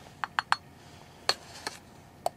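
Light metallic clinks from a stainless steel coffee mug being handled: three quick taps in the first half second, then a louder clink a little past the middle.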